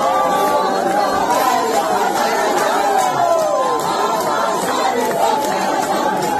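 A large crowd of people shouting and chattering excitedly, many voices overlapping at once with calls rising and falling in pitch.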